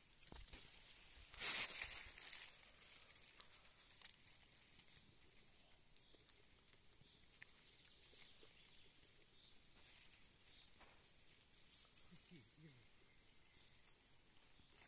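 Quiet outdoor ambience with a brief rustle and crackle of dry leaf litter about one and a half seconds in, followed by scattered faint ticks.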